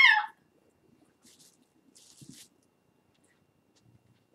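A woman's high, falling groan of "oh" at the very start, from sore knees as she gets up. After it come only faint rustles of movement and a soft knock about two seconds in.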